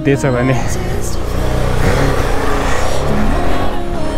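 Motorcycle engine running steadily while riding, with its pitch rising and falling briefly about halfway through; a voice speaks for a moment at the start.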